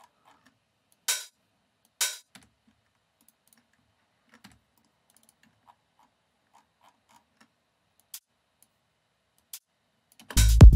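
Sparse short, sharp clicks against quiet room tone: two brighter, louder ones about one and two seconds in, then a few faint ticks.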